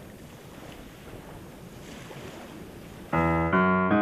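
A soft, steady rush of wind and sea. About three seconds in, the song starts much louder with sustained chords that change twice before the end.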